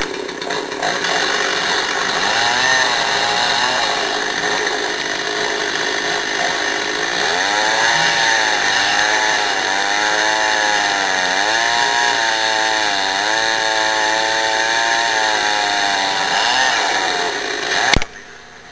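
Two-stroke chainsaw running at high revs while cutting into a large cedar trunk. Its pitch repeatedly sags and recovers as the chain loads up in the wood.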